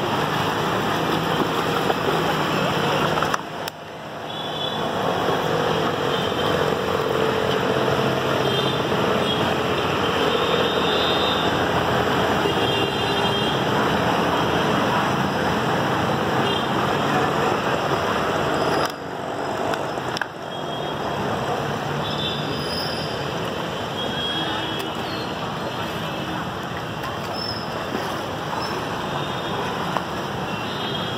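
Steady rushing noise of a flooded street, with faint voices in it; it drops out briefly about three seconds in and again near twenty seconds.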